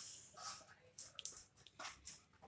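A hand mashing and kneading moist pearl-millet (bajra) dough in a steel plate: faint, irregular squishing and rubbing with a few light clicks.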